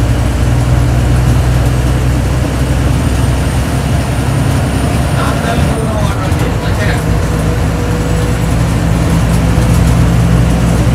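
Steady low engine drone and road noise of a moving TNSTC diesel bus, heard from inside the passenger cabin.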